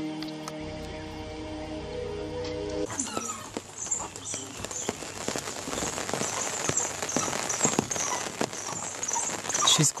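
Sustained musical chord for about three seconds, then a sudden cut to a recording full of irregular knocks and clicks over a high, pulsing hiss.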